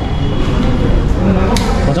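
People talking, with one sharp click about one and a half seconds in.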